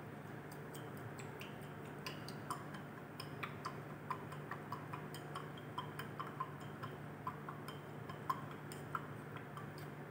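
Faint, irregular small glassy clicks and ticks from a glass test tube being shaken by hand to dissolve a solid sample in water, over a steady low hum.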